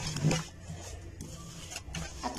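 Wet, soapy cloth being rubbed and shifted by hand on the ribbed washboard of a laundry basin: a short swishing scrub right at the start and a fainter one near the end, over a low steady hum.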